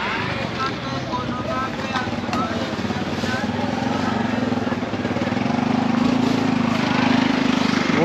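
A motorcycle engine running steadily, its hum growing louder from about halfway through, with people's voices in the background.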